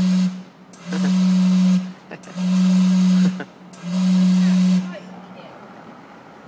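Gastown steam clock's steam whistle blowing long blasts all on the same low note, each about a second long with a strong hiss of steam, about one and a half seconds apart. One blast ends just after the start and three more follow, then only a fading hiss of steam. Repeating a single note like this is how the clock counts out the hour.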